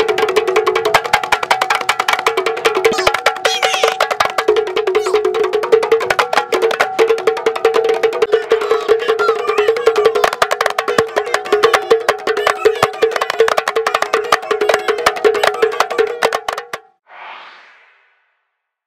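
A group of kompang, Malay hand-struck frame drums, beaten together with open palms in a fast, dense interlocking rhythm. The drumming stops near the end.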